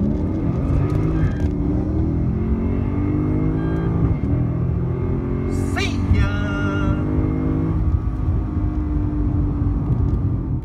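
2012 Lexus IS F's 5.0-litre V8, with an aftermarket cat-back exhaust, accelerating hard down a drag strip, heard from inside the cabin. The pitch climbs and drops again with each upshift. A brief high-pitched squeal comes about six seconds in.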